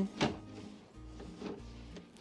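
A wooden knock about a quarter second in, then fainter knocks as wooden beehive frames are pushed together inside a wooden hive box. Quiet background music plays underneath.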